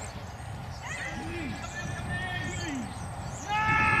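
Men's voices shouting on a rugby pitch as the scrum is set: a long drawn-out call, then louder shouting near the end.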